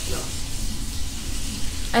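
Steady background hiss with a low rumble beneath it.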